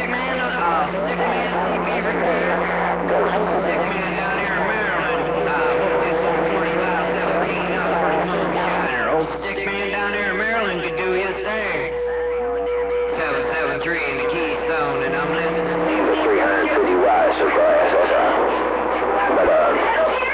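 CB radio receiving a crowded band during long-distance skip: many stations talking over one another at once, too jumbled to make out, with steady heterodyne whistles from carriers beating together. A higher whistle comes in about five seconds in and drops out at about sixteen seconds, when a lower one takes over. The sound is fed straight from the radio's audio.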